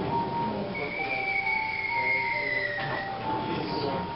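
A war-film soundtrack played over room speakers: a long whistle falls slowly in pitch for about two seconds over a background of music.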